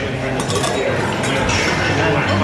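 A few light clinks of metal cocktail tools and glassware as a bartender finishes straining a cocktail, over the steady chatter of a busy bar.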